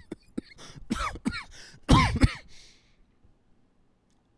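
A man coughing: a quick run of coughs, the loudest about two seconds in, dying away before the three-second mark.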